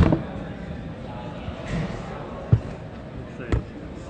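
Microphones being handled and knocked against a lectern as they are mounted: three thumps, a loud one at the very start, another about two and a half seconds in and a third a second later, over low background chatter.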